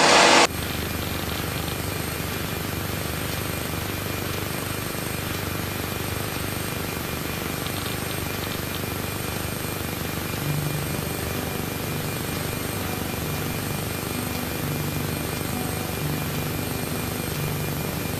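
Aquila AT01's Rotax 912 flat-four engine and propeller running steadily at full takeoff power through lift-off and the initial climb, heard from inside the cockpit.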